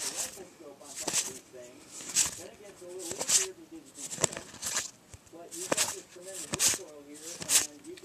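Magic: The Gathering trading cards being flipped through by hand, each card sliding off the stack with a short crisp papery sound about once a second. A faint voice murmurs underneath.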